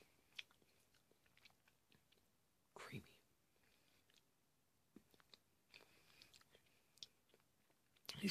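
Faint chewing and small mouth clicks of someone eating a frozen white chocolate Reese's peanut butter egg, with one short louder sound about three seconds in.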